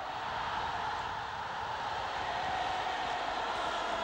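Steady noise of a large crowd, growing slightly louder.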